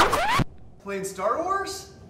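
A loud, quick swish with a rising pitch that cuts off sharply, followed about half a second later by a short vocal exclamation.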